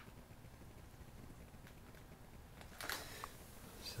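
Faint handling noise from a handheld video camera over quiet room tone, with a small click at the start and a brief rustle about three seconds in.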